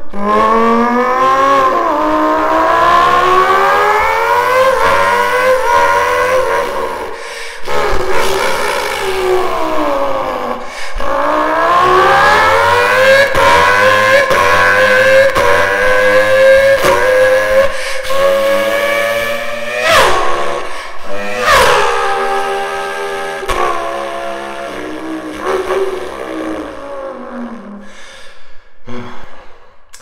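A man's vocal impression of a V10 Formula 1 engine, made with cupped hands at the mouth: a buzzing, high-pitched note that climbs in pitch again and again with sharp drops between, like upshifts. About a third of the way in it falls away as if braking and downshifting, then climbs again, and it sinks and fades near the end.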